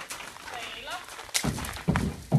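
A person talking, with a sharp knock about two-thirds of the way in.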